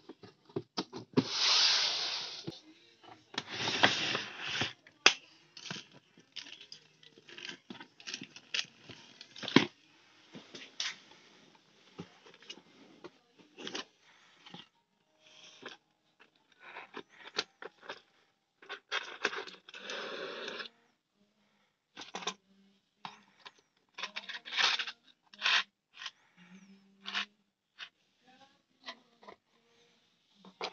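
Cardboard boxes and plastic packaging handled and opened by hand: two longer rustling tears in the first few seconds, then scattered rustles, light knocks and clicks as the bicycle disc brake parts are moved about.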